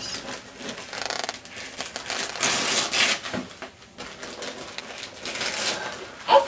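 Wrapping paper being torn and crumpled as a present is unwrapped, an irregular crinkling and ripping that is loudest for about a second midway through.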